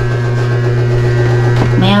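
Loud, steady low electrical hum, with a voice starting briefly near the end.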